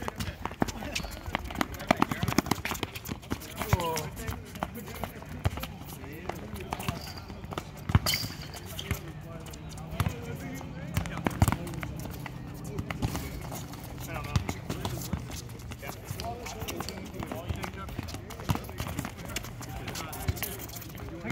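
A soccer ball kicked and bouncing on a hard court, with the scuffs and footfalls of players running, in a string of sharp knocks at irregular intervals. Players call out indistinctly throughout.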